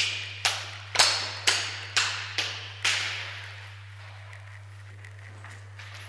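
Seven sharp, echoing knocks, about two a second, over the first three seconds. A steady electrical hum from a plugged-in audio cable or amplifier runs underneath throughout.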